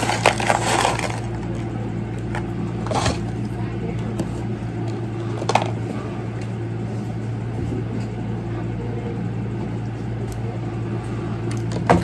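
McDonald's paper fries carton and food packaging being handled, with rustling in the first second and a few sharp clicks and knocks about three and five and a half seconds in, over a steady low hum.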